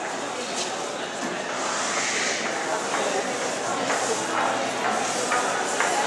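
Indistinct voices of people talking over a steady hubbub in a large indoor public hall.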